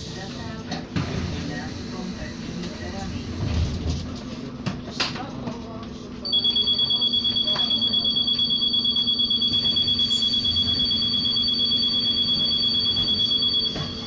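An electronic alarm trilling in rapid high beeps, about four or five a second, that starts about six seconds in and stops shortly before the end.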